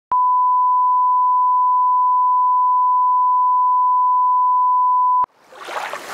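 Broadcast line-up test tone played over colour bars: one steady, single-pitched 1 kHz beep lasting about five seconds that cuts off suddenly. Near the end a rush of noise swells up.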